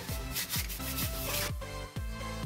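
An alcohol-soaked wet wipe rubbed briskly over the sanded surface of cardboard drink coasters, wiping off grease and sanding dust. The rubbing fades out about a second and a half in, over background electronic music with a steady beat.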